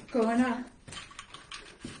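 A woman's voice calling out one drawn-out word near the start, part of a chant she repeats while dancing, followed by faint scattered clicks and rustling.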